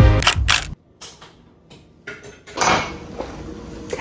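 Background music ends abruptly under a second in. About two and a half seconds in comes a short, noisy sip through a straw from a plastic cup of iced coffee, then low room noise.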